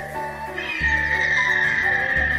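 Animated Pteranodon's cry, a long high screech starting about half a second in, over background music with a steady low bass line.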